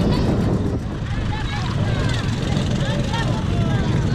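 Many people's voices calling out at once from the crowded boats around, overlapping with no clear words, over a steady low rumble.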